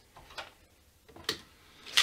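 A few light ticks of a screwdriver pressing and working heat-softened binding into place along the edge of a guitar neck. The sharpest tick comes a little past a second in.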